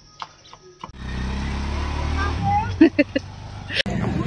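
A vehicle engine idling, a low steady hum that starts suddenly about a second in after a quiet start with a few faint clicks. Brief snatches of voices come in near the end.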